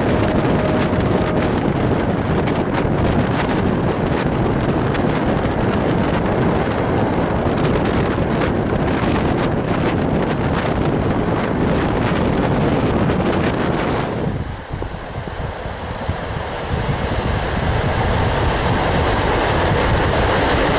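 Passenger train running at speed, heard from a carriage window: a steady rumble of wheels on rail mixed with wind rushing over the microphone, with scattered clicks. The noise drops for a couple of seconds about 14 seconds in, then builds back up.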